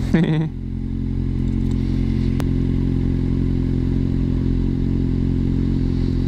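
Kawasaki Z750R's inline-four engine idling steadily, with no revving, heard through the helmet camera's microphone. A single faint click sounds about two and a half seconds in.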